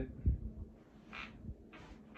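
Quiet movement noise from a person turning in an office chair while wearing a backpack: a low thump just after the start, then two short rustles, one about a second in and one near the end.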